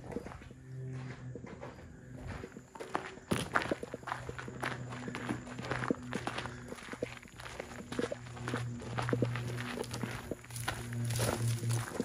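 Footsteps on rough outdoor ground, a continuous run of irregular short scuffs and crunches, over a faint low hum that comes and goes.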